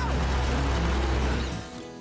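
Cartoon vehicle sound effect: a loud rushing whoosh with a deep engine rumble as a digger and tractor speed along, over background music. It cuts off about a second and a half in, leaving only the music.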